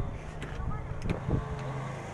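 A car engine idling steadily, with a few light knocks over it.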